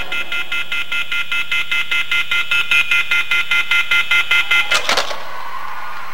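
Rapid electronic alarm-like beeping in the show's music soundtrack over the sound system, about five high pulses a second. It cuts off with a sharp hit about five seconds in, leaving a steady hiss.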